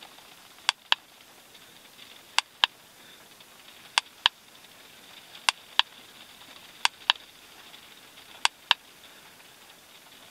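Sharp clicks in pairs, a quarter second apart, repeating evenly about every one and a half seconds, six pairs in all.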